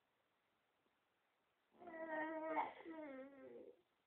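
An eight-month-old baby vocalizing: one drawn-out babbling "aah" sound, slightly wavering and about two seconds long, that starts a little before halfway in.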